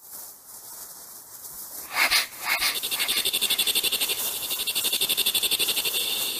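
Rapidly pulsing animal calls, like a chorus of croaking frogs, begin about three seconds in. They follow two short loud calls about two seconds in, over a faint hiss that rises from silence.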